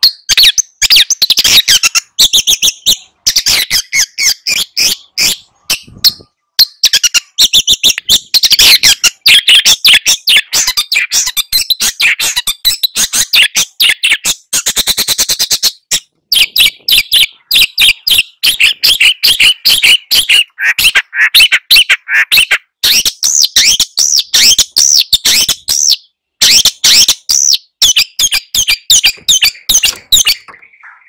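Long-tailed shrike singing a loud, rapid, harsh chattering song of many short notes, broken by a few brief pauses, with a fast buzzing trill about halfway through.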